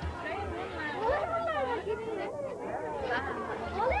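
Several voices talking over one another: children and adults chattering, with no single clear speaker.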